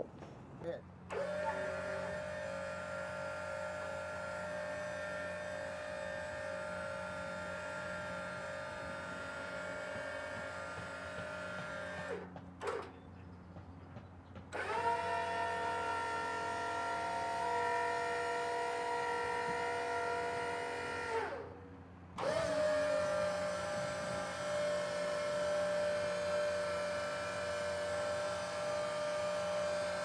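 Electric drive motor of a cable boat lift running with a steady whine as it moves the lifting beams. It winds down and stops twice for a second or two, running at a higher pitch in the middle stretch than before and after.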